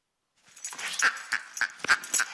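A Schnoodle, a small dog, makes rapid short vocal bursts as it pounces on and tussles with a toy. The bursts start suddenly about half a second in and come about three a second.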